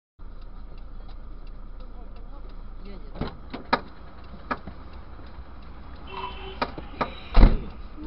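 Car cabin sound picked up by a dashcam: a steady low road and engine rumble with faint regular ticking. A handful of sharp knocks and clicks follow from about three seconds in, with the loudest thump near the end.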